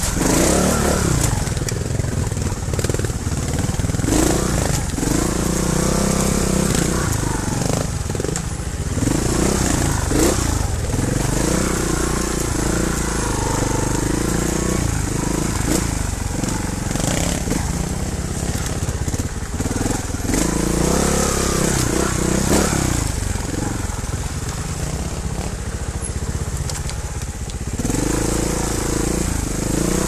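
Trials motorcycle engine at low speed, revving up and dropping back in short bursts every few seconds over rough ground, over a steady low rumble.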